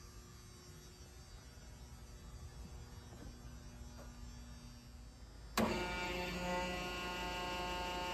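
Faint shop hum, then a little over two-thirds through, the Logan 6-ton hydraulic press's electric motor and hydraulic pump switch on with a click and run with a steady whine.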